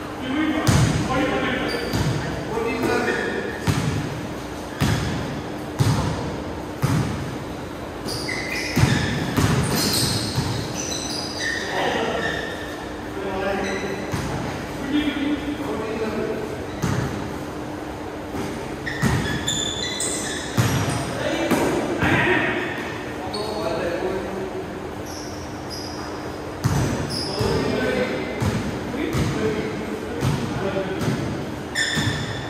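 A basketball bouncing and thudding on an indoor court floor, in irregular strikes through the whole stretch, with echo from the hall.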